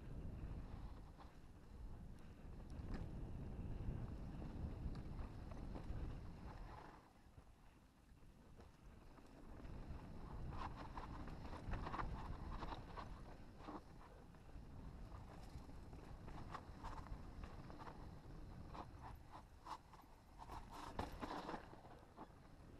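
Mountain bike riding down a dirt singletrack: a low rumble of wind and tyre noise on the camera, with scattered clicks and knocks from the bike, more of them in the second half.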